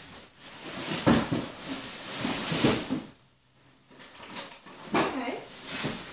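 Rummaging in a cardboard box: rustling and scraping of cardboard and plastic packaging, in two spells with a short lull between, and a couple of sharper knocks about a second in and near five seconds.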